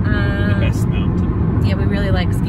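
Steady low road and engine rumble heard from inside the cabin of a moving car at highway speed. A person's voice sounds briefly near the start and again near the end.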